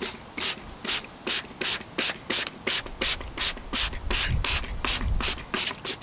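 Hand trigger spray bottle pumped quickly and steadily, about three squirts a second. Each squirt is a short hiss of mist with the click of the trigger as liquid dye goes onto a piece of carpet.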